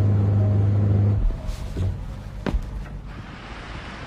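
A low steady hum ends about a second in, leaving the rushing of a boat moving through water, with one short knock near the middle.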